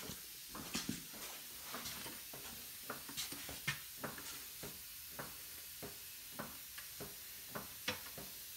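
A jack being worked to lift a tractor's front axle: a string of short, sharp clicks and knocks, roughly two a second.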